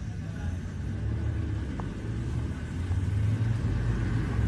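Steady low rumble of an idling vehicle engine, growing slowly louder.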